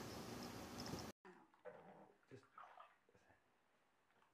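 A few faint, short animal cries in quick succession, after a steady background hiss cuts off suddenly about a second in.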